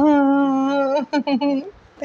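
A woman's voice holding a long sung "ta-daa" note for about a second, then a few short laughing syllables.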